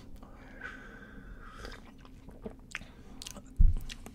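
Sips of coffee from a ceramic mug, small slurping, mouth and swallowing sounds with faint clicks. A short, loud low thump near the end as the mug is set down on the desk.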